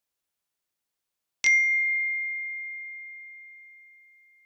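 A single bell-like ding, struck once about a second and a half in, ringing at one high pitch and fading slowly over the next few seconds.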